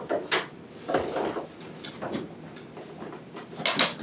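Irregular knocks, clicks and rustling of equipment being handled at a defibrillator cart as the paddles are readied for a shock, the loudest knocks just before the end.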